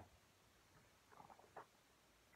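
Near silence, broken about a second in by a few faint rustles and taps from the pages of a hardcover picture book being turned and handled.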